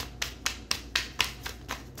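A deck of tarot cards being shuffled by hand: a quick run of crisp card taps and slaps, about five a second.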